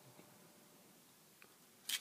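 Quiet room with a faint tick about one and a half seconds in, then a short scraping click near the end as the small metal-bodied lighter is handled during reassembly.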